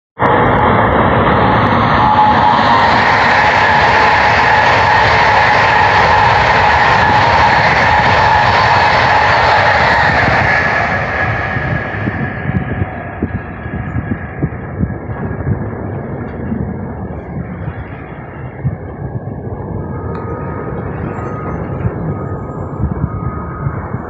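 Two coupled ICE 3 high-speed trainsets passing at speed: a loud rushing noise of wheels and air with a steady whine in it, holding for about ten seconds, then dying away as the train recedes.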